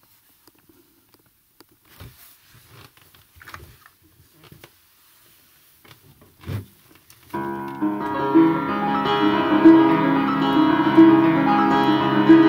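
A few soft knocks and rustles, then about seven seconds in an upright piano starts playing a Ukrainian church hymn. The notes come thick and continuous, layered into one dense, sustained sound.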